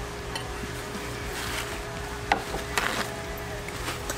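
Metal knife and fork clicking and scraping against a ceramic plate a few times, over steady room noise with a low hum.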